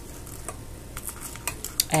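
Faint crackling and a few small clicks of dried sorrel (roselle calyces) being handled between the fingers.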